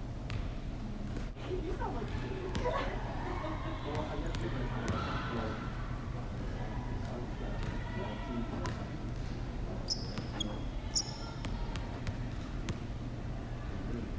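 A basketball bouncing and being caught on a hardwood gym floor, in scattered single knocks, over a steady low hum. Brief high squeaks, typical of sneakers on hardwood, come about ten and eleven seconds in, and faint voices are heard in the first half.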